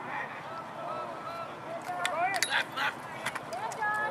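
Distant voices calling and shouting across an outdoor lacrosse field, with a few sharp clacks about two to three seconds in.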